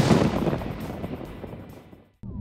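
Logo sting: a single loud hit at the start that rings out and fades away over about two seconds.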